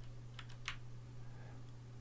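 A few faint computer keyboard keystrokes: arrow keys tapped to move the text cursor, two of them clearer about a third of a second apart within the first second. A faint steady low hum runs underneath.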